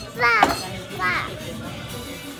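A toddler's voice making two short high-pitched calls in imitation of a sheep's bleat.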